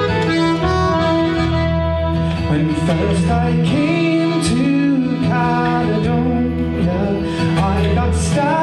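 Live Irish folk music: fiddle, accordion and acoustic guitar playing a song, with a man singing from about two and a half seconds in.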